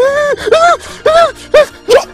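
A man crying out in distress in a string of short, high, wailing sobs, about five in two seconds.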